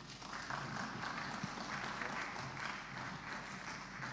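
Audience applauding, beginning a moment in and continuing steadily, to welcome the next speaker to the podium.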